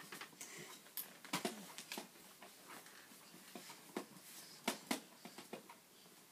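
Babies clambering on baby bouncer seats: scattered soft knocks, clicks and rustles of the bouncer frames and fabric, with two sharper knocks near the end, and faint baby grunts and breaths in between.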